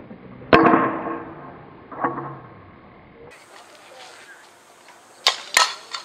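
A softball bat hitting the ball, first slowed down. About half a second in comes a deep crack with a ringing tone that dies away, and about a second and a half later a second, smaller ringing hit. Near the end, at normal speed, come two sharp cracks a third of a second apart.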